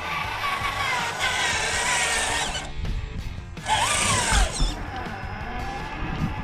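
Electric motor and gears of a radio-controlled scale truck whining as it drives, the pitch shifting with throttle. It cuts off briefly a little under three seconds in, then spins up and down again about four seconds in. Background music plays under it.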